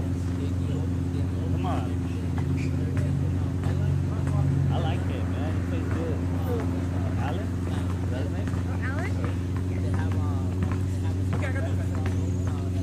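Distant shouts and calls from players on an outdoor court, scattered throughout, over a steady low mechanical hum.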